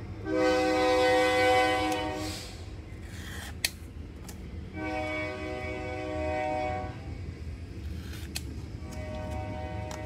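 Train horn sounding long blasts of several notes at once: one of about two seconds, a second about five seconds in, and a third starting near the end, over a steady low rumble. A few sharp clicks from handling are heard between the blasts.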